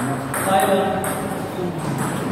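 Table tennis ball clicking off paddles and the table in a rally, with a voice talking over it.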